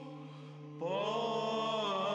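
Byzantine chant sung by a monastery choir: a steady held drone (the ison) under the melodic line. The melody thins out briefly and then comes back in with a rising phrase a little under a second in.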